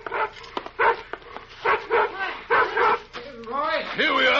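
A dog barking in a string of short barks, turning near the end into drawn-out whines that rise and fall, on a 1950s radio transcription.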